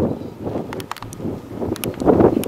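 Wind buffeting the microphone as a steady rumbling noise, with a few short, sharp clicks about a second in and again near the end.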